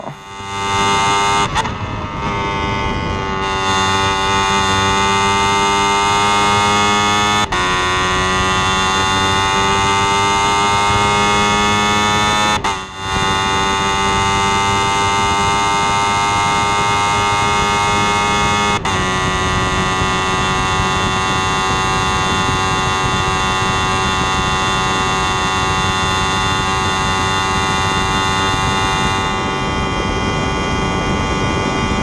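Formula single-seater racing car's engine heard from the onboard camera, held at high revs at full throttle. The steady, high engine note drops in pitch at each upshift, several times, with a brief dip in the sound partway through. The driver complains the engine is down on power.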